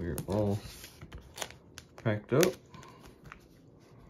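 A rigid cardboard mailer being handled and slid across a wooden table: a few short scrapes and taps of card on wood. Two brief mumbled vocal sounds from the man packing it, about a quarter second in and again about two seconds in, are the loudest parts.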